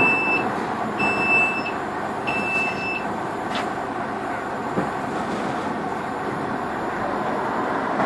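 Heavy crane's diesel engine running steadily under load, with an electronic warning beeper sounding in evenly spaced beeps, each under a second long, that stop about three seconds in.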